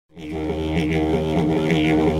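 Opening theme music led by a didgeridoo: a low, steady drone with a rhythmic, shifting pulse in its upper tones, starting right at the beginning.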